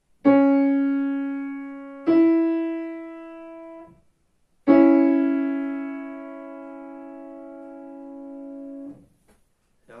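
Digital piano playing two notes one after the other, then both together as an interval held for about four seconds until released; each note starts loud and fades away. It is an ear-training dictation example being played for the student to notate.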